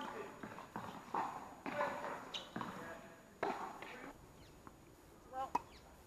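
Tennis balls struck by rackets and bouncing, each hit ringing around a large indoor tennis hall, several in quick succession over the first four seconds, with voices calling between shots. It goes quieter after that, with one sharp hit near the end.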